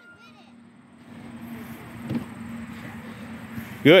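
A motor vehicle passing, a steady hum that builds over the last three seconds, with one dull knock about two seconds in.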